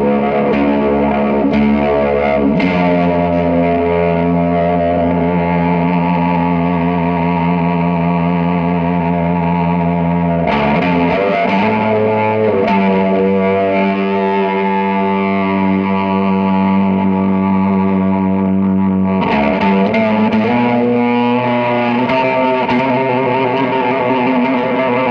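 Music: a sustained drone of layered, effects-processed guitar that holds each chord and shifts to a new one a few times.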